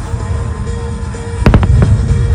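Aerial firework shells bursting: one loud bang about one and a half seconds in, followed quickly by a few sharper cracks, over a steady low rumble.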